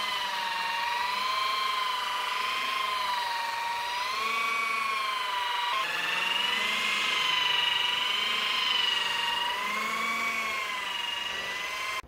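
Rotary car polisher with a foam pad buffing paint on a car hood: a steady, high motor whine whose pitch wavers slowly up and down, with a brief break about six seconds in.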